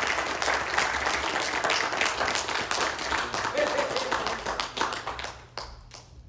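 People clapping and applauding, with voices calling out among the claps, dying away about five and a half seconds in.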